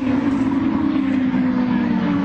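Open-wheel IndyCar race car engines (Honda V8s) running at speed, heard through television broadcast audio as one steady engine note that slowly falls in pitch, over a dense roar.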